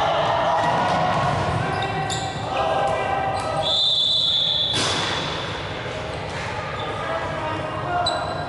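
Dodgeball rally in an echoing sports hall: players shout over one another while rubber balls smack against bodies and the wooden floor, about three sharp hits, and a high squeak or whistle rings for about a second around the middle.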